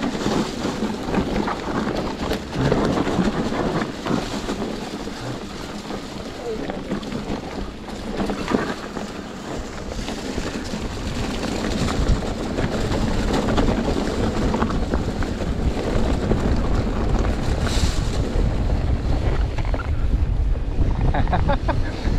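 Wind buffeting the microphone over the rumble and rattle of a mountain bike rolling fast down a dry, leaf-covered dirt trail, growing louder in the second half.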